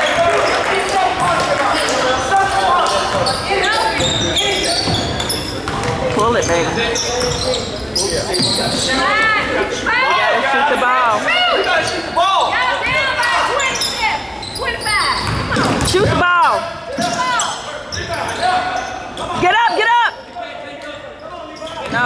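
A basketball being dribbled on a hardwood gym floor, with sneakers squeaking in short chirps and players and spectators calling out. It all echoes in a large gym.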